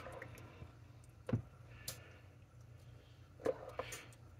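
Metal spoon stirring thick, wet chicken pot pie filling in a plastic bowl, with a few light knocks of the spoon against the bowl.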